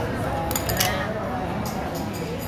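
A few light clicks and knocks of chunky plastic toy building blocks, the assembled toy car being pressed together and set down on a wooden table, over the steady hubbub of voices in an indoor public space.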